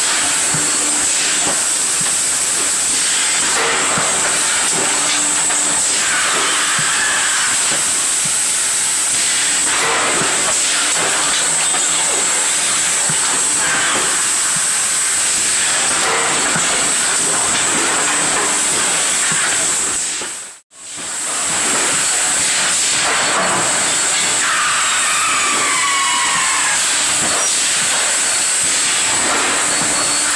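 GN 3021C thermoforming machine running in production: a loud, steady hiss of air with a high-pitched whine over it and a few short squeaks. The sound drops out for an instant about two-thirds of the way through.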